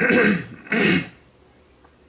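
A man clearing his throat, two short bursts in the first second, then only faint room noise.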